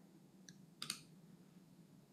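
Near silence with two faint clicks: a small tick about half a second in and a slightly louder click just under a second in.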